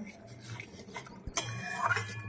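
A metal spatula stirring and scraping curry in a wok, with a sharp clack about a second and a quarter in, followed by a short rising squeak.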